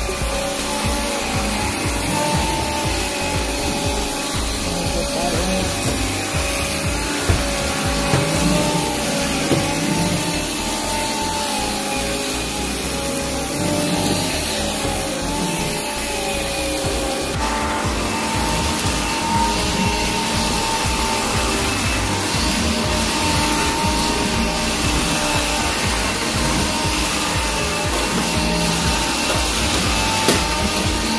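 Bissell AirRam cordless stick vacuum running over carpet, a steady motor whine whose pitch wavers a little as it is pushed about. About 17 seconds in the whine shifts abruptly to a higher tone.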